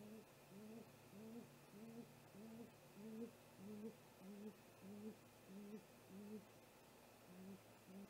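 Great gray owl giving a long series of deep, evenly spaced hoots, a little under two a second, pausing briefly near the end before two more.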